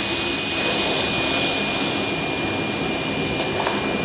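Miele Blizzard CX1 bagless cylinder vacuum cleaner running on its minimum power setting: a steady rushing of air with a constant high-pitched whine, as its floor head is pushed over a shaggy rug picking up oats.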